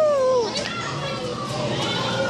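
A child's high voice calls out in a long cry that falls in pitch and ends about half a second in. Other children's voices chatter and play after it.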